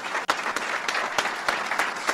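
Audience applauding, a steady dense patter of many hands clapping.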